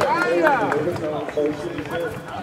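Spectators shouting during a rugby match, their voices rising and falling sharply in pitch as a player breaks clear.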